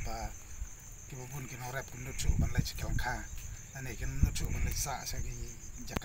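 A man talking, with a steady, high-pitched pulsing insect trill running behind his voice.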